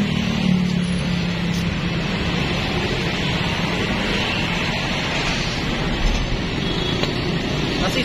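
Steady street traffic and vehicle engine noise, with a low engine hum strongest in the first couple of seconds.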